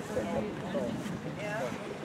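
Indistinct talk of people close to the microphone, with wind rumbling on the microphone.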